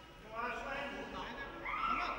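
High-pitched raised voices calling out from around the mat, starting about half a second in, with one long rising call near the end.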